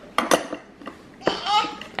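Two quick clinks as a toy ice cream scoop knocks against the wooden scoops and counter of a child's toy ice cream stand.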